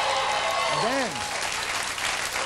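Studio audience applauding and cheering loudly, with a single short rising-and-falling vocal whoop about a second in.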